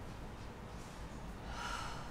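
A woman breathing out after coming down from a wheel-pose backbend: one soft breath near the end, over faint room noise.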